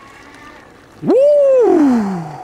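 A man's loud whoop, "Woo!", about a second in: one long cry that rises, holds and then slides down in pitch.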